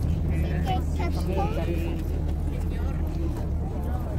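People talking among themselves over a steady low engine drone.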